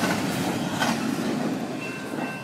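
Double-stack intermodal well cars of a freight train rolling past: steady wheel-on-rail noise with a sharp click about a second in, easing off slightly as the tail end goes by. A faint high steady tone comes in near the end.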